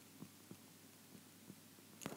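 Near silence with a few faint, short ticks: a stylus tapping on an iPad screen while handwriting.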